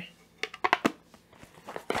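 A few light clicks and rustles from handling a screwdriver-bit kit's soft black case, closing it up: a quick cluster of clicks about half a second in and another click near the end.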